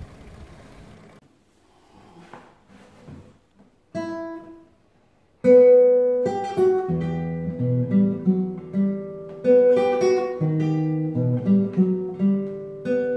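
Nylon-string classical guitar played fingerstyle: a single plucked note about four seconds in, then from about five and a half seconds a melody of plucked notes over bass notes.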